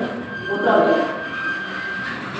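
A man's voice in a pause of a sermon: one short phrase about half a second in, with a faint steady high tone behind it.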